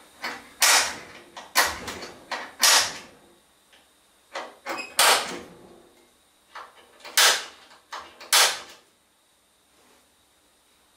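A marking punch striking the sheet steel of a Dodge Challenger fender to mark the centres of spot welds: six sharp metallic strikes, most with a lighter tap just before, spaced about one to two seconds apart.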